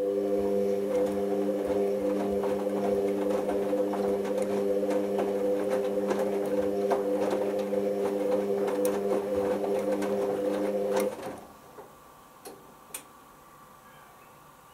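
Hoover Optima OPH714D washing machine's motor turning the drum during the load-sensing stage of a cotton prewash. It gives a steady hum with light clicks and taps from the tumbling load, then stops suddenly about eleven seconds in, followed by a few faint clicks.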